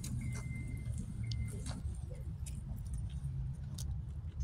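Low outdoor rumble, with a thin steady high whistle that breaks off twice and stops after about a second and a half, and scattered light clicks.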